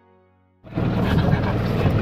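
Background music fading away, then about half a second in, a sudden cut to the loud running of a small boat's motor.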